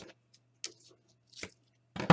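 Double-sided tape and card being handled: two brief, soft rustles about a second apart as the tape is laid along the card's edge.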